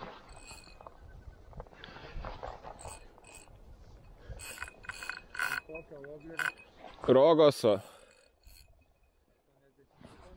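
A spinning reel being cranked, with light clicks and clinks from its handle and gears. About seven seconds in a man lets out a loud, wavering, wordless cry, the loudest sound here, after a shorter vocal sound just before it.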